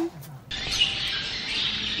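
Small birds chirping over a steady hiss, starting abruptly about half a second in.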